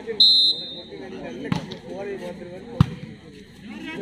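A referee's whistle gives one short, shrill blast, then a volleyball is struck twice with sharp slaps, about a second and a half in and again just over a second later, over crowd chatter.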